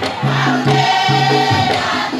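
Maoulida shengué, a Mahorais devotional song, sung by a chorus of voices over a steady percussion beat.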